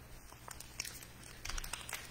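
Foil wrapper of a baseball-card pack crinkling and crackling as it is picked up and handled, in a run of sharp crackles that grows loudest near the end.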